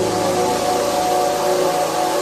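Uplifting trance music in a beatless stretch: sustained synth pad chords held over a wash of white-noise hiss.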